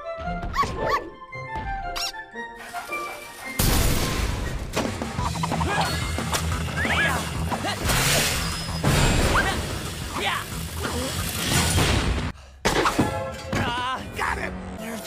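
Animated fight-scene soundtrack: score music under a dense run of action sound effects. The effects get loud and busy about three and a half seconds in, stop briefly near the end, then resume with sharp hits.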